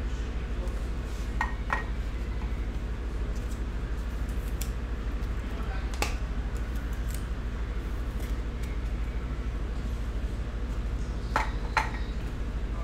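Light clicks and taps of plastic card holders and trading cards handled on a table: two about a second and a half in, a sharp one midway and another pair near the end, over a steady low electrical hum.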